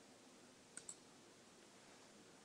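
Near silence, broken by two faint clicks close together just under a second in.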